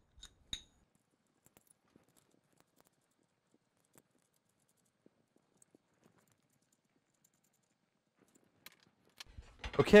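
Faint, scattered clicks and ticks of aluminium extrusion bars and small steel screws being handled and set down on a bench, with one sharper click about half a second in.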